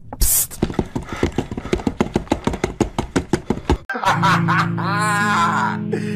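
Meme-edit music track: a short hiss, then a fast run of sharp, rhythmic hits for about three and a half seconds, then a wavering, warbling high tone over held low notes.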